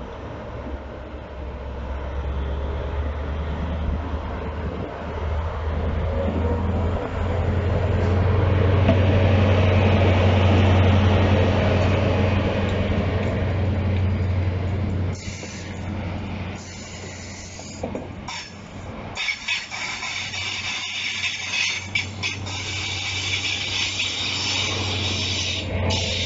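Class 43 High Speed Train diesel power car passing close by. The low engine note builds to its loudest midway, then drops off suddenly, and broken high-pitched hissing follows in fits as the train draws away.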